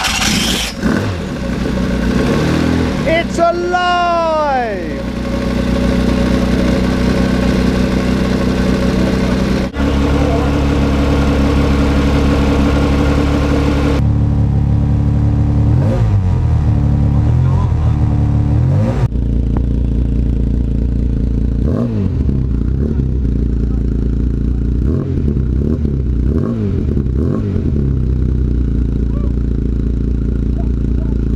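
Classic Mini's new A-series race engine running just after its first start. It is blipped up and down in pitch about three seconds in, then holds a steady fast idle, with further short throttle blips later on.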